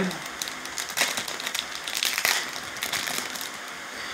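The plastic foil wrapper of a 2021 Topps Chrome baseball card pack crinkling and crackling in the hands as it is torn open, with irregular sharp crackles, the strongest about a second in and again after two seconds.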